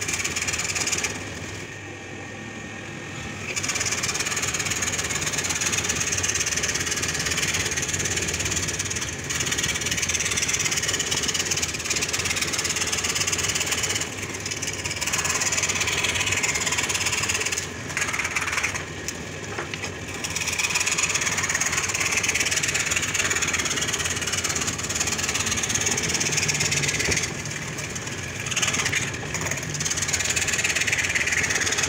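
Scroll saw's reciprocating blade cutting curves in a thick board, a steady buzzing rasp that drops quieter for a few moments several times as the cut eases off.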